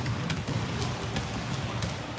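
Basketballs being dribbled on a hard court floor, a few irregular bounces over a steady background hiss.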